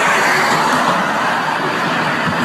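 Loud, noisy on-scene audio from a handheld phone recording of a street arrest: a dense, even hiss of traffic and crowd noise, with voices faint beneath it.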